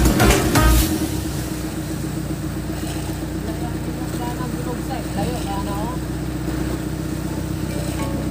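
Electronic music stops about a second in. After that comes the steady drone of a fishing boat's engine running under way, with faint voices in the middle.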